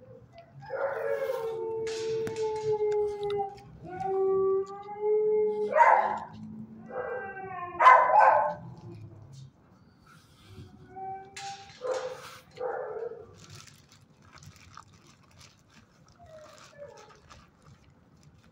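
A dog howling in long drawn-out notes, several in a row in the first nine seconds, with two louder, harsher calls among them. A few shorter calls follow about twelve seconds in.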